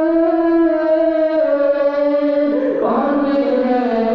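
Male voice holding one long sung note of a naat, with a second male voice coming in about two and a half seconds in.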